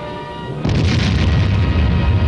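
Dramatic old film-soundtrack music, joined about two-thirds of a second in by a sudden loud, deep boom that keeps going rather than dying away.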